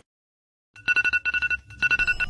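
Near silence for under a second, then a digital alarm clock beeping: rapid, high electronic beeps in a burst, a brief pause, then another burst.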